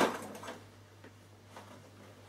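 A Bernina sewing machine stops stitching right at the start, its running sound dying away within half a second. After that only a faint steady low hum and a few soft ticks remain.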